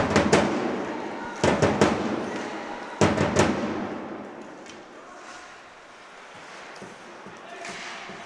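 Ice hockey play in an arena: two sharp puck impacts, about one and a half seconds in and again at three seconds, each ringing on in the hall's echo before fading into quieter rink noise.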